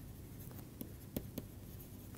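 Stylus writing by hand on a tablet: faint scratching strokes with a few sharper taps of the pen tip in the second half.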